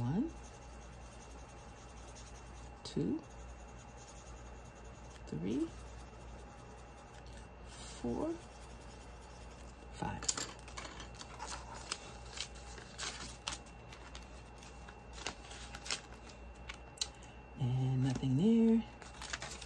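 Colored pencil scratching on a paper tracker, with a few short low hums that rise in pitch. From about ten seconds in come quick clicks and rustles as pencils are handled and the pages of a plastic binder are flipped. A longer hum comes near the end.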